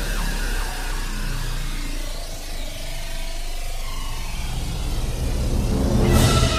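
Electronic-orchestral film score passage: a low sustained drone under many sliding, siren-like pitches that glide up and down, growing louder near the end.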